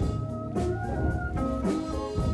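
Korean traditional (gugak) ensemble playing, with gayageum zithers plucking melody lines over sustained low notes and regular sharp note attacks.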